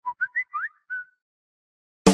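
A phone notification tone: about five quick high blips, several gliding upward, over about a second.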